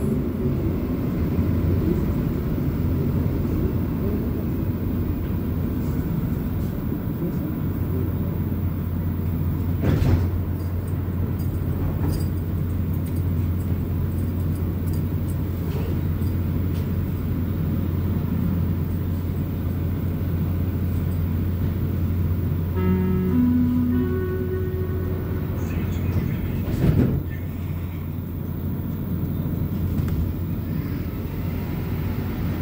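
Interior of a Montreal Metro Azur (MPM-10) train: the car's steady low hum as it slows into a station and stands, then the door-closing chime of three short rising notes about 23 seconds in, and the doors thudding shut a few seconds later.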